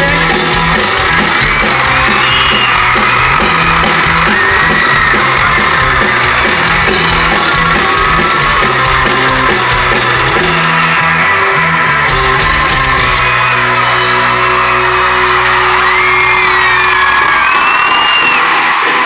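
Live pop-rock band playing loudly in an arena, heard from within the audience, with high-pitched screams from fans rising and falling over the music.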